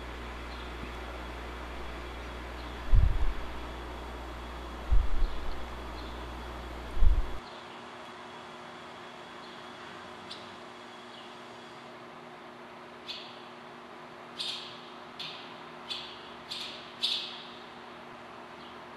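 Three dull low thumps in the first half, then in the last few seconds a series of about six short, high chirps from barn swallows at the nest.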